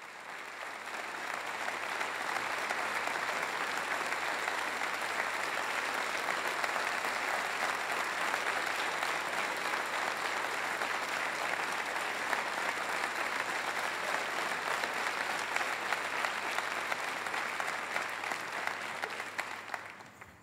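Concert audience applauding: the clapping swells up over the first couple of seconds, holds steady, and dies away near the end.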